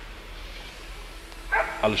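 Faint outdoor background with a steady low rumble, then a man's voice starting about a second and a half in.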